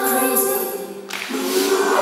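Live pop concert finale: several voices hold a final sung chord over the music, cutting off sharply about a second in. An arena crowd's cheering then swells.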